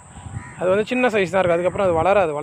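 A cast net landing on pond water with a soft splash, followed from about half a second in by loud, wavering, voice-like pitched calls in short phrases.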